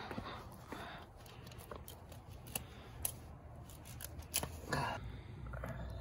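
Knife cutting at a squirrel carcass during skinning: scattered small clicks, snips and scrapes.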